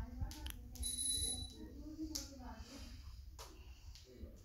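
A person's voice speaking quietly in a small room, with a few sharp clicks and a brief high-pitched tone about a second in.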